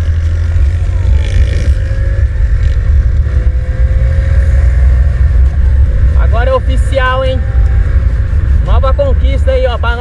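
Honda Pop 110i motorcycle ridden at road speed: a heavy low rumble of wind on the on-bike camera microphone over the small single-cylinder engine, whose faint tone rises slowly in the middle. A man's voice cuts in briefly about six seconds in and again near the end.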